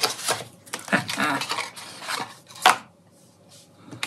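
Small cardboard product box being opened by hand: irregular scraping and rustling of the packaging, with one sharp knock about two-thirds of the way in.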